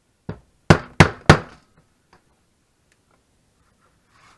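A mallet striking a metal hole punch through leather: a light tap, then three hard blows about a third of a second apart, and a faint tap after them.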